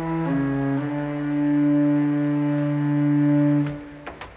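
Pipe organ playing: a few quick chord changes, then one long held chord that cuts off near the end, followed by the clunk of a stop knob being moved at the console.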